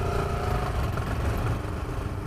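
Small motorcycle engine running steadily as it rides past: a low rumble with a steady humming note that fades near the end.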